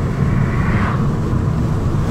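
Steady low rumble of road and wind noise inside the Opel Adam Rocks with its cloth roof closed, cruising at about 90 km/h. A hiss swells and fades within the first second as an oncoming car passes.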